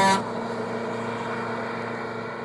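Vehicle sound effect: the last of two horn beeps ends right at the start, then a steady engine hum runs as the vehicle drives off.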